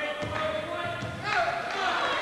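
Basketball game sounds on a hardwood court, with the ball bouncing and a steady held tone for about the first second and a half.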